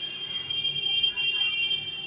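Hot air rework gun blowing over a laptop motherboard, its blower giving a steady high-pitched whine.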